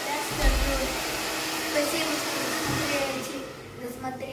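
Handheld hair dryer blowing steadily as hair is brushed through with a round brush; its rushing air drops away about three seconds in.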